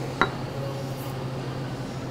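A glass set down on a wooden bar top with a single short clink just after the start, over a steady low hum.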